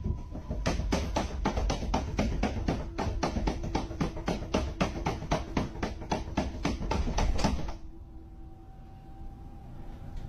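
Rapid, even scratching and scraping against a door, about six strokes a second, cutting off suddenly near the end: a cat clawing at the door from the other side.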